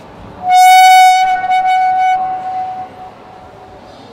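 A single loud, steady high note with a bright edge, like a signal tone, starts sharply about half a second in. It drops a little after about a second and fades out by about three seconds.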